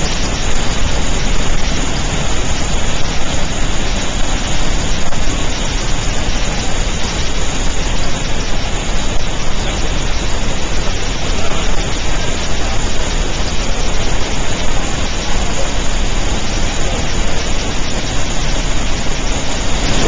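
Steady, loud rush of Snoqualmie Falls, a large waterfall carrying more water than usual from mountain snowmelt.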